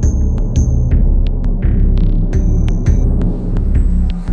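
Electronic soundtrack: a loud, pulsing low throb with sharp clicks over it and a thin high tone that drops out and comes back.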